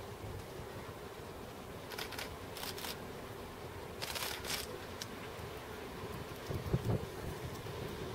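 Mat'54 'Hondekop' electric multiple unit approaching in the distance: a low, steady rumble. Short hissing bursts come at about two and four seconds in, and a pair of low thumps near the end.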